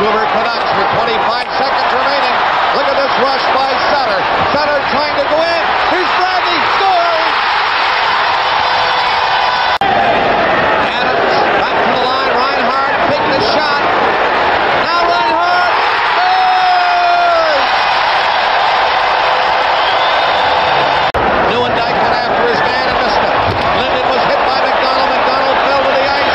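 Hockey arena crowd noise: a steady din of many voices, with individual shouts rising and falling above it and a few sharp knocks.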